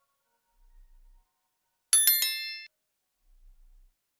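A single bright bell ding, a sound effect, about two seconds in. It rings with several high tones at once and dies away in under a second.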